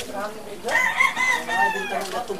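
A rooster crowing: one long call that begins a little before the middle and falls away in pitch near the end.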